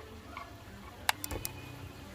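Metal kitchenware clinking against a stone countertop: one sharp clink about a second in, then a quick run of smaller clicks with a brief metallic ring.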